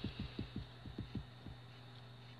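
A quick, uneven series of about eight soft low thuds, each dropping in pitch, in the first second and a half, over a steady low electrical hum.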